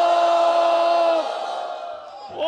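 A man's long drawn-out shouted call, the court-crier's summons "haazir ho", its last vowel held on one pitch for over a second and then fading away.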